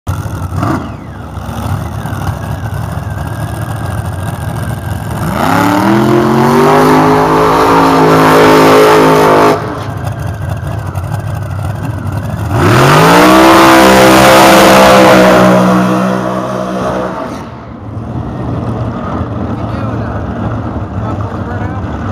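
Dragster's V8 engine idling, then revved hard for about four seconds and cut off sharply. A few seconds later it goes to full throttle on launch, the pitch climbing and then fading as the car runs away down the strip.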